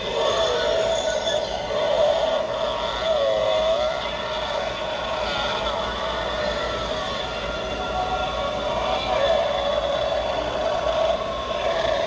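An animated pop-up pumpkin Halloween prop plays its spooky sound effect through its small speaker while its head rises and lowers. The sound is a sustained, warbling drone that runs throughout.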